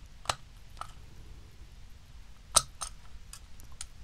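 A few separate sharp clicks from handheld metal hole punches being handled and squeezed on a strip of craft foam. The loudest clicks come about a third of a second in and about two and a half seconds in.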